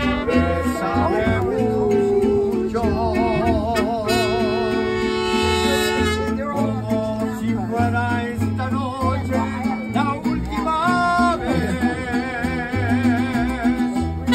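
Mariachi band playing live: guitarrón bass notes under strummed guitars and a violin, with a singer holding long notes with a wavering vibrato.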